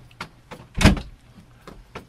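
Door sound effect: a few light clicks and knocks with one heavier thump just under a second in, as a door is shut.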